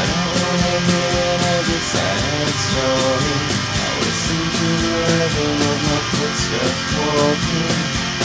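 Indie rock music: guitars play an instrumental passage over a steady beat, with no singing.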